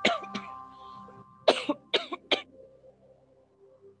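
A woman coughing: a short pair of coughs at the start, then three harder coughs in quick succession about a second and a half in, over soft music with sustained tones.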